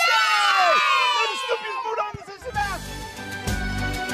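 A group of young children shouting a team cheer together, a long high yell that fades away. About two and a half seconds in, upbeat music with a steady beat starts.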